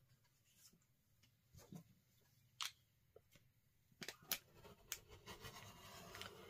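Very faint handling sounds: a few light taps and clicks as an acrylic ruler and paper template are set on a cutting mat. Near the end comes a soft continuous rasp as a rotary cutter cuts through the quilted layers.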